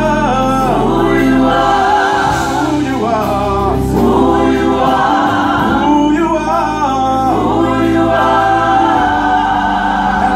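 Gospel worship team singing live through microphones: a male lead singer with a choir of women, over long held accompaniment notes.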